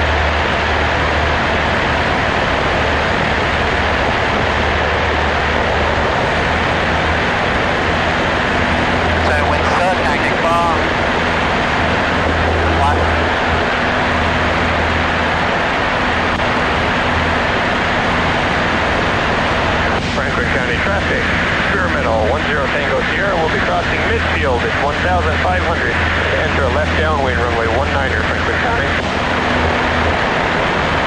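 Cessna 152's four-cylinder Lycoming engine and propeller droning steadily in cruise flight, heard from inside the cabin.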